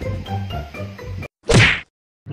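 Background music that cuts off about a second in, then a single brief, loud whoosh-and-hit sound effect: an edited transition sting for a channel logo.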